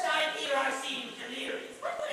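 An actor's voice making dog-like yips and whimpering cries, short pitched sounds that slide up and down.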